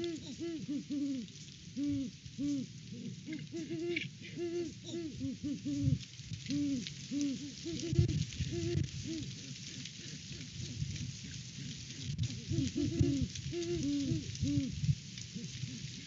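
Great horned owls hooting: a dense run of short, low, overlapping hoots, several a second, with a steady high hiss behind.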